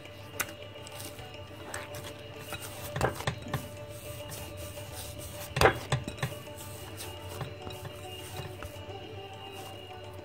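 Soft background music with a few knocks and taps of hands working ghee-coated dough against a glass bowl, the loudest a little past halfway.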